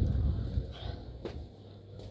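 Low muffled rumble of the phone being carried while walking, a single sharp click just over a second in, then a quieter steady low hum, typical of a shop's refrigerated display counters.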